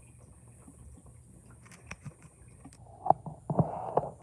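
Quiet background with scattered faint clicks, then a few sharp clicks and a short rustling, scraping burst near the end.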